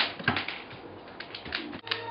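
A German shepherd's claws clicking on a hardwood floor as it steps about, a quick irregular series of sharp clicks, the loudest at the very start.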